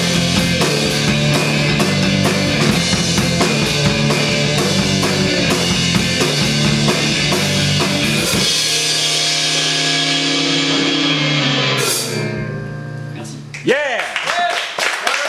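Live rock band, a Telecaster-style electric guitar and a drum kit, playing loud together. About eight seconds in the drums stop and the guitar rings on alone, fading as the song ends.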